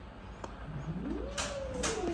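Cat in a pet carrier giving one long drawn-out yowl that starts about a third of the way in, rises in pitch and then slowly sinks.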